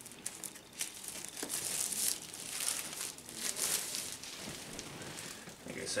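Plastic shrink-wrap on a vinyl record box set crinkling and tearing as it is pulled off by hand, an irregular scratchy rustle that is busiest in the middle.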